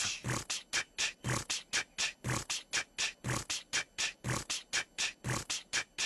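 Beatboxing into a microphone: a fast, even beat of mouth-made snare and hi-hat sounds, about five a second, with a deeper kick about once a second.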